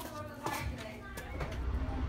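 Faint children's voices and a couple of sharp knocks, then a steady low car-cabin rumble from about one and a half seconds in.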